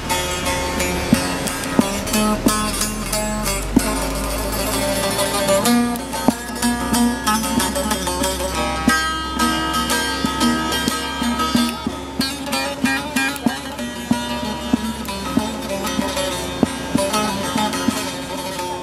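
Bağlama (Turkish long-necked saz) played solo with a pick in a folk tune: many quick strummed and plucked strokes, with no singing.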